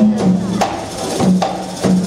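Nasyid group's percussion playing a steady beat, with sharp strokes about every 0.6 s, each followed by a short low drum tone. It comes in just as a held sung chord ends.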